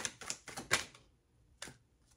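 A tarot deck being shuffled by hand, the cards clicking and fluttering in a quick run for about a second, then one more snap of cards shortly before the end.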